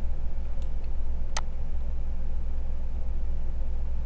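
A steady low hum with a single sharp computer-mouse click about a second and a half in, and a fainter click before it.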